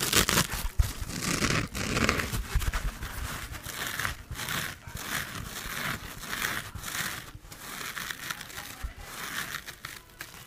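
A dry, three-layered foam sponge squeezed and pressed over and over between the fingers, making a continuous run of short, dry, scrunching sounds.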